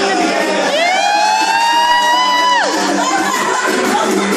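A long, high whoop from an onlooker that glides up, holds for about two seconds and drops off sharply, over dance music playing.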